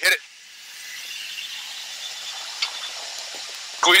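Steady hiss of fighter-jet cockpit noise over the hot-mic intercom as the jet enters a 7 G turn in max afterburner. It builds over the first second and then holds level.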